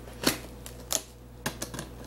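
Clear plastic cylinder gift box being handled as its lid is pulled off, giving a run of sharp clicks and crackles.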